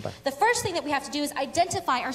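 Speech only: a man's voice ends at the very start, then a woman speaks into a microphone.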